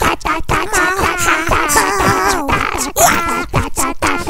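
A song cover whose melody is voiced in squeaky, meerkat-like calls, gliding up and down, over a quick clicking beat.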